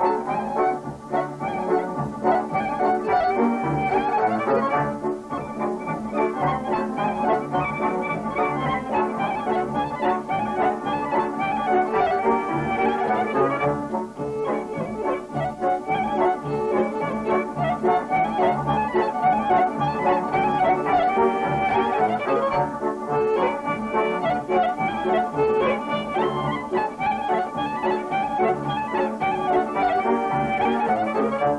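Violin playing a Romanian folk tune, with band accompaniment underneath and a steady pulsing bass.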